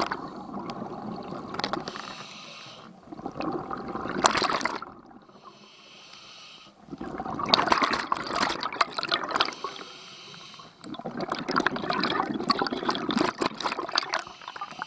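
A scuba diver breathing through a regulator: long bursts of bubbling exhaust alternate with shorter hissing inhalations, about three breaths in all.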